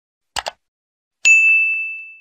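Subscribe-button sound effect: two quick mouse clicks, then a bright bell-like notification ding that rings on and fades over about a second.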